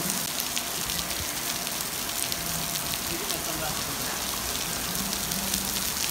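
Steady rain falling on a swimming pool, a dense even patter of drops.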